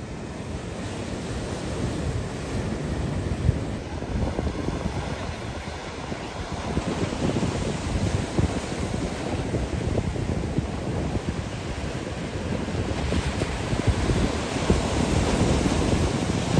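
Ocean surf breaking against a rocky shore, with wind buffeting the microphone. The surf grows louder toward the end.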